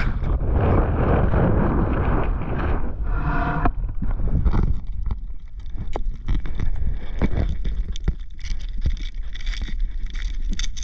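Small boat's motor running, with wind buffeting the microphone. From about halfway through, a stream of sharp clicks and crackles sits over the engine and wind.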